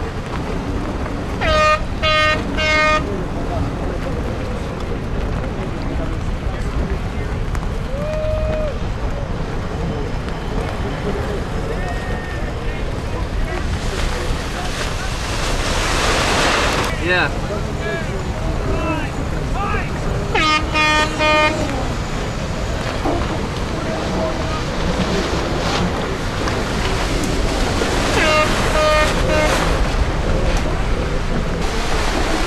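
Wind and water rushing past TP52 racing yachts as they sail through choppy seas, with a surge of spray about halfway through. Over it come short, same-pitched horn toots in quick groups of about three, near the start, around the middle and near the end.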